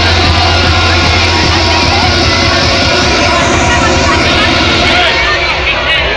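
Loud electronic dance music from a festival sound system, distorted on a phone microphone, with a deep sustained bass note that fades after about two seconds. Crowd voices shout over it.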